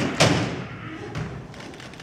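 A heavy wooden thump from a stage-prop steamer trunk as its lid is swung open and bangs down, followed by a lighter knock about a second later.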